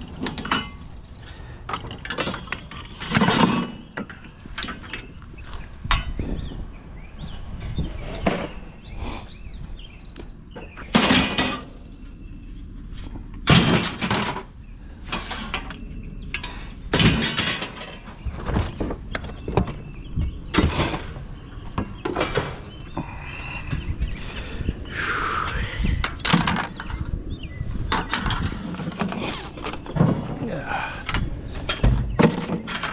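Steel bed-frame rails and other scrap metal clanking and banging as they are picked up from a curbside pile and thrown into a loaded pickup bed, with a string of separate loud impacts.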